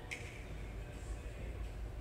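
Low, steady rumble of room noise in a large indoor arena, with a single sharp click just after the start.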